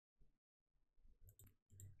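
Near silence, with a few faint clicks in the second half.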